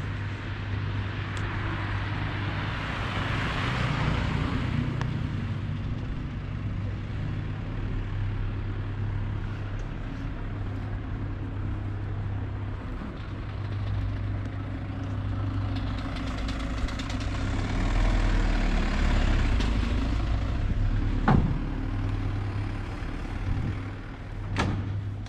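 Street traffic: a steady low hum of road traffic, with a vehicle passing about three seconds in and another growing louder in the second half. A single sharp click near the end.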